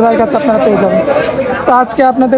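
Speech only: a person talking without pause, with no other distinct sound.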